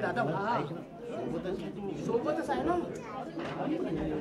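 Several people talking at once in a room: overlapping chatter with no single clear voice.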